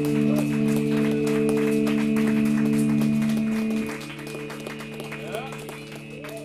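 Live shoegaze band holding a sustained, droning amplified chord that drops away about four seconds in, leaving a quieter drone with scattered clicks.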